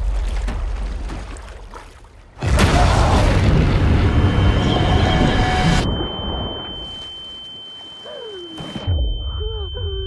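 Trailer sound design for ocean peril: a low rumble fades, then a sudden loud crashing boom of surf hits about two and a half seconds in and lasts a few seconds. After that a high, steady ringing tone holds, with a few gliding tones near the end.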